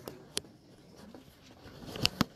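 Handling noise close to the microphone: a sharp click about a third of a second in and another at the very end, with faint rustling and a light tick between.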